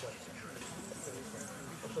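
Faint, steady background talk from people around the field, with a single sharp click right at the start.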